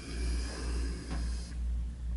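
Steady low background hum that swells and fades about twice a second, with a faint hiss above it.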